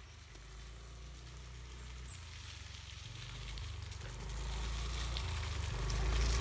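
A motor scooter coming along a dirt track, its low engine hum growing steadily louder as it approaches.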